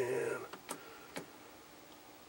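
A man's voice trails off in the first half second. Then come two sharp clicks about half a second apart as a rotary selector switch on a CR70 CRT analyzer and restorer is turned.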